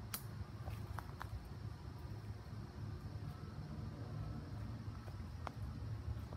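Quiet woodland background with a steady low rumble on the phone's microphone, broken by a few faint, sharp clicks: three close together near the start and one near the end.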